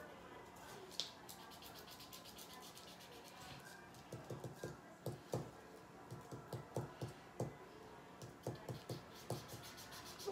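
Felt-tip marker scratching on a paper colouring page in quick back-and-forth colouring strokes. The strokes come in an irregular run of two or three a second, starting about four seconds in.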